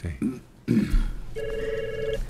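Desk telephone ringing once: a short electronic ring of under a second, starting about one and a half seconds in.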